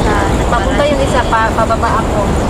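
Women's voices talking in conversation over a steady low background rumble.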